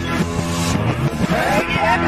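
A rock song played backwards: reversed singing over the band's reversed chords and beat, with swelling notes that cut off abruptly. A sung phrase glides near the end.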